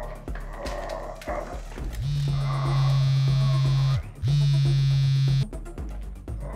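Mobile phone buzzing with an incoming call: two long, steady buzzes, the first about two seconds and the second just over a second after a short gap, over faint background music.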